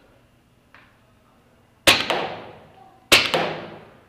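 Paintball marker shots: a sharp crack about two seconds in, then a quick burst of two or three shots a little over a second later, each ringing and fading out in the large indoor hall.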